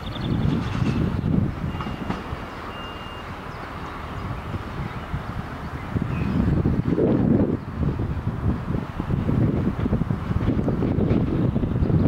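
DSB IC3 diesel multiple unit running as it pulls away along the tracks, a steady low rumble that grows louder about halfway through.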